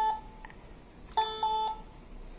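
Electronic beeping tones from the speaker of a home-built snap-together circuit-kit musical baton: a note ends just after the start, then two short beeps of about the same pitch follow about a second in.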